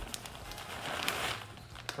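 Plastic bag of shredded cheddar crinkling softly as the cheese is shaken out onto cooked macaroni, with a few light ticks.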